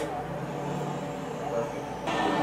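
Street traffic with a steady low engine drone from an approaching city bus.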